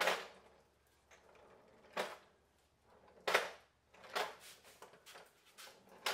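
Four short, light knocks as a wooden workbench base on Rockler workbench casters is pushed by hand across the floor.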